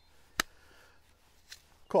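ESEE 5 fixed-blade knife seated into its molded sheath: one sharp click about half a second in as it snaps home, then a faint tick.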